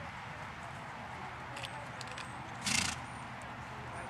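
A horse moving on soft sand arena footing: faint hoofbeats over a steady background hiss, with a few light clicks. One short, loud puff of noise comes about three quarters of the way through.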